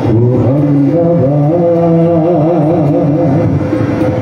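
Live Indian light music: a harmonium holding sustained chords while a man sings a wavering melody over it, with tabla and acoustic guitar accompanying, heard through a PA.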